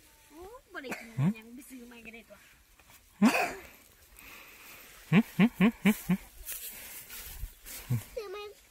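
Voices of a woman and a baby: sing-song baby talk with sliding pitch, a loud vocal exclamation about three seconds in, and a quick run of five short rhythmic voice pulses, about five a second, a little after five seconds in.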